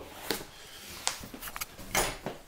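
Handling noise from a handheld camera being swung around in a small room: a few faint clicks and rustles, with a sharper click near the end.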